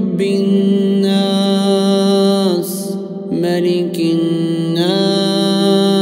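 A man's voice chanting Quranic verses, drawing the vowels out into long held melodic notes. Two long phrases are separated by a quick breath about three seconds in.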